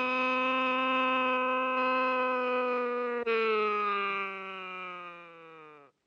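A long hooting tone like a factory hooter, held at one steady pitch for about three seconds. After a brief break it slowly sinks in pitch and fades, stopping just before the end.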